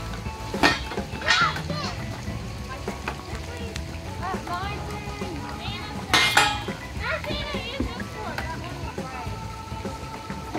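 Children calling out and chattering at play, over background music, with a sharp knock or clack just under a second in and a louder one about six seconds in.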